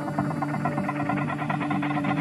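Techno music: a steady low synth drone with a fast, evenly repeating synth pattern pulsing above it.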